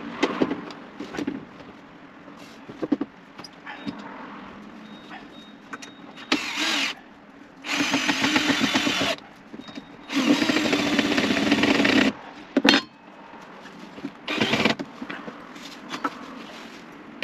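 Cordless drill-driver driving screws into a timber frame: four runs of the motor, the two middle ones longest at about one and a half and two seconds, with knocks and clicks of handling between them.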